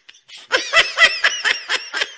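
A high-pitched laugh, a rapid string of short bursts about seven a second, starting about half a second in.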